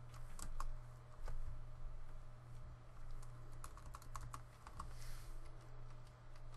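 Keystrokes on a computer keyboard: irregular clicks that come in bunches about half a second in and again around four seconds in, over a steady low hum.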